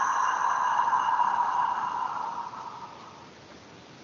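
A person's long, slow breath out close to the microphone, a steady hiss that fades away about three seconds in. It is a deliberate exhale in a tapping breathing exercise.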